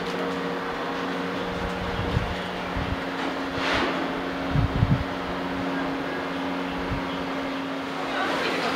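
Steady low mechanical hum with a few faint pitched tones over a bed of background noise. A few dull low bumps come about halfway through.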